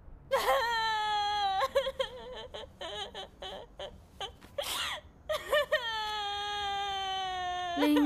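A woman crying loudly: a long wailing cry, then broken sobs and gasps, then a second long wail that slowly sinks in pitch.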